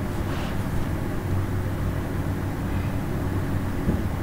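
A steady low background hum.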